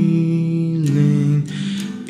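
Slow acoustic guitar chords, the guitar tuned down to D♭ and capoed at the third fret, under a man's long held sung note that steps down in pitch about a second in.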